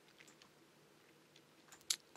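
Quiet room tone, then a single short, sharp click a little before the end.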